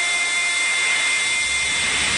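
A steady synthesized hiss with a thin high held tone and no beat: a noise-effect breakdown in an electronic dance track.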